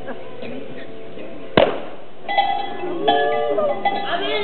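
A single pistol shot about one and a half seconds in, sharp and loud with a short echo, followed by music and voices.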